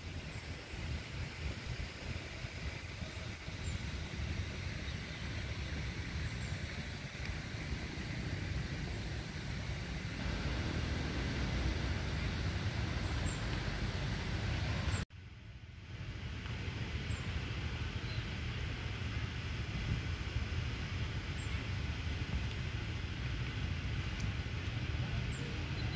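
Outdoor background noise: a steady low rumble with no voices, cut off sharply for a moment about fifteen seconds in before resuming.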